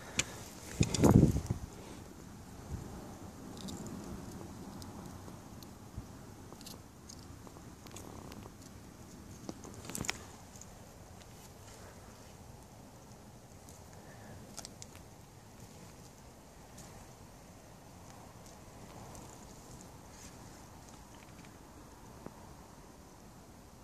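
Faint footsteps and walking-stick knocks on wet dirt and stones, with handling noise. There is a loud low thump about a second in and a sharp knock about ten seconds in.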